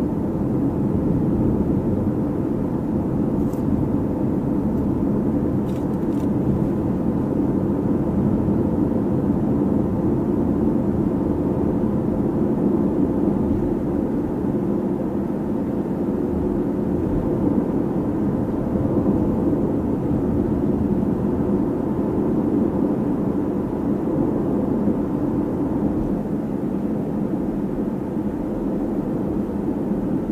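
Steady drone of a car driving, heard from inside the cabin: engine and tyre noise holding an even level throughout.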